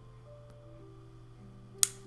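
A metal pipe lighter clicks once, sharply, near the end, over soft background music with long held notes and a steady low hum.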